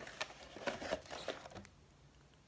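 Packaging rustling and crinkling as a Shimano Cardiff reel is pulled out of its cardboard box: a run of quick crackles and scrapes that stops after about a second and a half.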